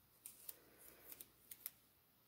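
Very faint handling of a paper sticker by the fingers: five or six small sharp ticks with a soft rustle of paper between them, as a sticker is peeled from its backing and set on the planner page.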